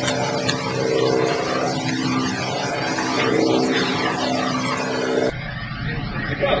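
Heavy truck engine running steadily with an even droning pitch that swells and eases slowly, as the crane tow truck hoists the load. It cuts off abruptly about five seconds in, giving way to other outdoor sound.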